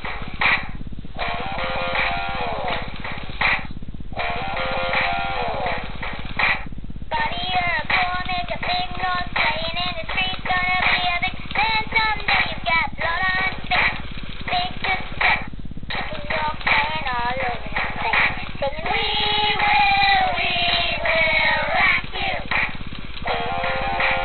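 A singing plush toy playing its built-in song: a recorded voice singing a melody over electronic music, broken by a few short pauses between phrases.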